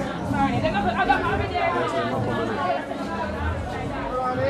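Crowd chatter: many people talking at once, overlapping voices with no single clear speaker.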